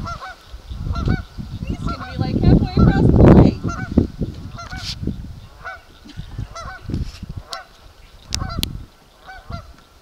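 Geese honking over and over, about two calls a second, as a dog swims after them. Bursts of low rumble come and go beneath the calls, loudest about three seconds in.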